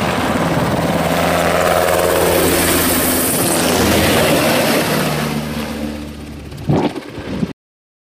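UH-60 Black Hawk helicopter flying low past, its rotor and turbine noise loud and steady, with tones that glide down in pitch as it goes by. The sound fades, gives a brief sharp knock near the end, and then cuts off abruptly.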